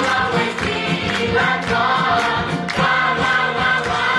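Music with a group of voices singing together.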